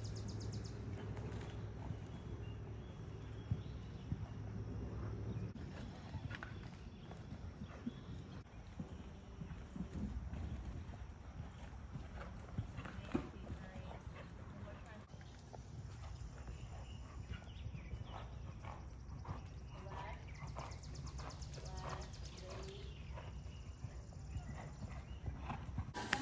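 Horses' hooves thudding on the soft dirt footing of a covered riding arena as several horses are ridden around the ring, with faint distant voices.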